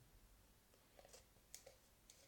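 Near silence: quiet room tone with a few faint small clicks, about a second in and again half a second later, from wooden sticks being handled.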